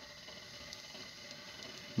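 Faint steady sound of a pot of mussels boiling on a gas hob.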